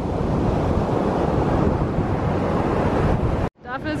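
Ocean surf breaking on a sandy beach, with wind rumbling on the microphone. The steady noise cuts off abruptly near the end.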